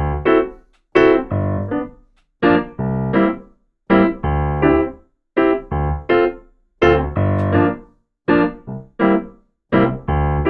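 Programmed reggae groove playing back, with piano and Fender Rhodes electric piano in short offbeat chord stabs on the upbeats. The phrase repeats about every one and a half seconds, with brief gaps of silence between.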